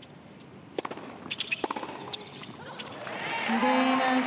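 Tennis ball struck on a serve and a few sharp racquet hits and bounces in a short rally, then crowd applause and cheering swelling up about three seconds in as the match-winning point ends.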